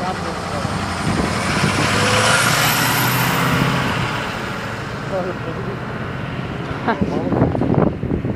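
A pickup truck driving past close by: its engine and tyre noise swells to a peak about three seconds in, then fades away. Voices talk briefly near the end.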